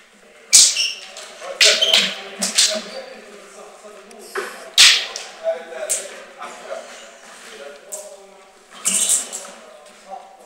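Metal sword blades clashing in sparring: a series of sharp clacks, some with a short ring, loudest about half a second in, near five seconds and twice near nine seconds. Feet stamp and shuffle on a wooden floor between them.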